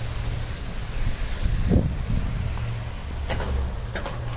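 Wind rumbling on a handheld phone's microphone, with a brief thump a little before halfway and a couple of sharp clicks near the end.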